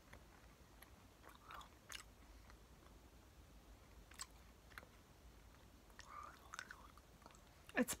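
Faint mouth sounds of a person chewing a jelly bean: a few soft, scattered wet clicks over a quiet room.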